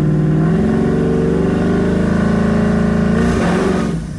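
Twin-turbocharged Coyote 5.0 V8 of a 2019 Mustang GT pulling in second gear, its revs rising steadily for about three seconds. Near the end the note breaks up and falls away as the rear tyres break loose at about 3,100–3,200 rpm.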